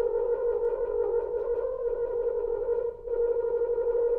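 Solo French horn holding a long, loud note, briefly broken about three seconds in and then held again.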